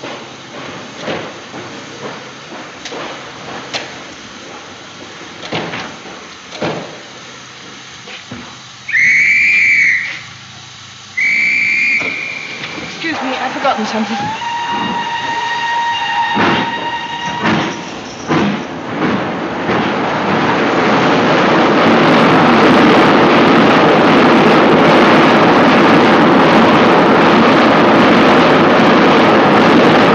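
Steam railway station sounds: scattered knocks and clatters, then two short shrill whistle blasts about nine and eleven seconds in, then a longer whistle that sounds a lower and a higher note together. After that a loud, steady rush of steam-train noise builds and holds through the last third.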